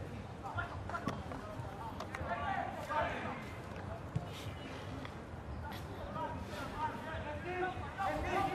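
Distant voices of football players and onlookers calling out, with a few sharp knocks of the ball being kicked.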